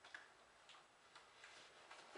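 Near silence, with a few faint, light ticks about half a second apart.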